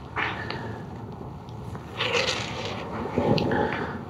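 Gummed paper tape being pulled up off the edge of a wooden board and damp watercolour paper: a few short rustling, tearing pulls with light clicks of handling.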